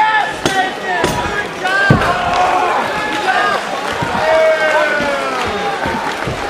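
Arena crowd yelling and cheering, many voices at once, with a few sharp thumps in the first two seconds.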